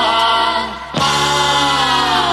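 Soviet vocal-instrumental ensemble pop song: long-held sung notes in vocal harmony over the band. The notes fade briefly and a new held chord comes in about a second in.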